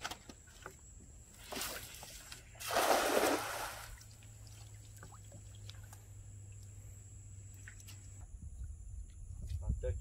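Water sloshing and splashing as a cast net is dragged slowly through shallow lagoon water. The loudest splash comes about three seconds in, just after a weaker one, with small drips and ticks between.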